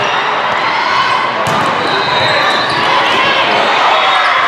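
Din of a busy indoor volleyball hall: many voices calling and talking at once, with volleyballs being struck and bouncing. One sharp hit stands out about a second and a half in.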